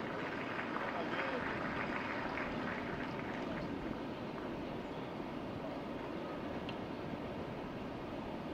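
Steady background ambience with a low murmur of distant voices, and no distinct sound event.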